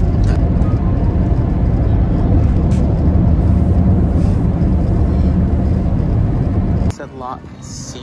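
Car cabin noise while driving: a steady low rumble of road and engine, which cuts off abruptly near the end.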